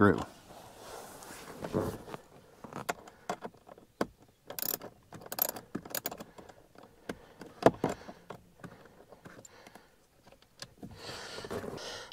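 Small ratchet with a 5.5 mm socket clicking in short, irregular runs of sharp metallic clicks as a screw is backed out.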